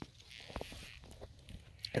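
Faint rustling of dry fallen leaves underfoot, with a few soft clicks.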